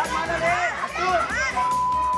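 Women shouting and shrieking in a brawl, their high voices rising and falling sharply, over background music. About one and a half seconds in, a steady high beep tone starts and holds at an even level.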